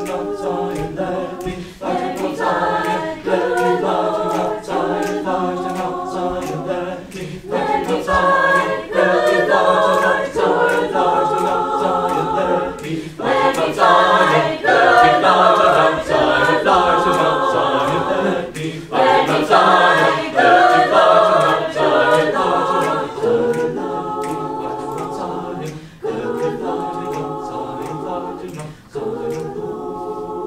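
Mixed-voice a cappella choir singing sustained chords over a steady low bass note, in phrases several seconds long that swell loudest in the middle.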